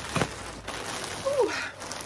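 Plastic mailer bag and the blanket's plastic wrapping rustling and crinkling as a parcel is opened by hand, with a sharp click near the start. A brief falling vocal sound comes about halfway through.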